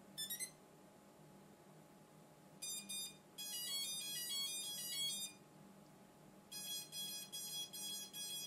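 Heliway 913 GPS brushless quadcopter beeping as it restarts after an IMU calibration: a quick rising run of notes at the start, a fast run of electronic tones a few seconds in, then short beeps at about four a second near the end.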